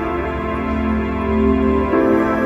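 Background music: soft, sustained keyboard chords in a calm new-age style.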